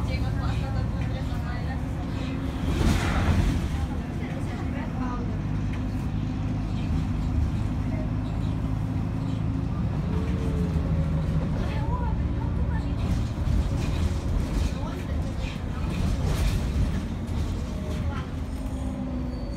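Cabin noise inside a moving city bus: the engine running steadily with road rumble, and a brief louder burst of noise about three seconds in. Indistinct voices of other passengers can be heard under it.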